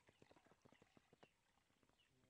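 Near silence, with a run of faint, soft ticks over the first second or so as water is drained off soaked maize grits, pouring and dripping from one plastic basin into another.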